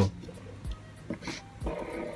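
Stainless-steel Spinetic DNA fidget spinners spinning freely on their bearings, a faint steady whir, with a few light knocks as fingers flick and handle them.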